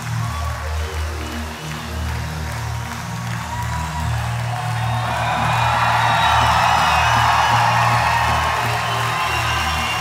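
Opening of a live rock concert recording: a sustained low musical drone under audience cheering and applause, which swells louder about halfway through.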